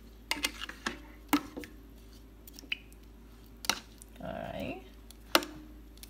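Kitchen tongs clicking and tapping against the Instant Pot's inner pot while drumsticks are shifted in the sauce: a string of short, sharp clicks at irregular intervals, with a brief soft patch about four seconds in.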